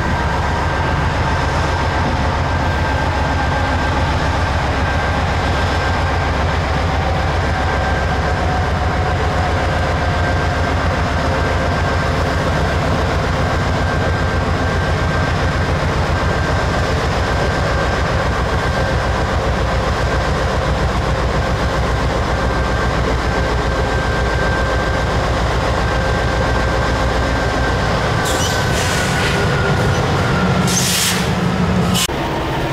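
Norfolk Southern diesel locomotives, six on the head end of a loaded coal train, working under load as they draw steadily closer with a deep, constant engine rumble. About two seconds before the end, sharp wheel-and-rail clatter joins as the lead unit reaches the crossing.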